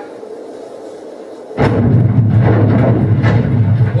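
Sonification of seismometer recordings of the 2011 Tohoku earthquake, time-compressed into the range of hearing. A faint, even hiss of the quiet before the quake, with no precursors, gives way about one and a half seconds in to a sudden loud boom as the mainshock arrives, which carries on as a deep, continuous rumble.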